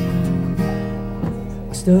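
Acoustic guitar strummed, one chord struck at the start and another about half a second in, each left ringing, as a song begins. A man's singing comes in near the end.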